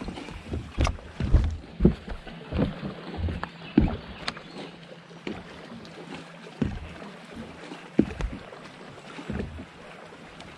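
Water slapping against the hull of a bass boat in irregular low thumps, with a few sharper knocks, most frequent in the first few seconds.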